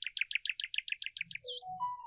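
Bird chirping: a quick, even run of about a dozen high chirps, some eight a second, that stops about a second and a half in. A short tune with soft beats and rising notes starts just before the chirps end.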